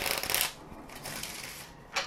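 A deck of Lenormand cards being shuffled by hand: a quick flutter of cards for the first half second, then softer rustling.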